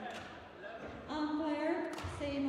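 A woman's voice with long held pitches comes in about a second in, after a single thud right at the start.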